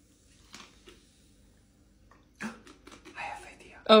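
Quiet room with faint clicks from a plastic soda bottle being handled: a couple of light ticks early, then a quick cluster of clicks and taps about two and a half seconds in as the bottle is capped and set down on a countertop. A voice says "oh" right at the end.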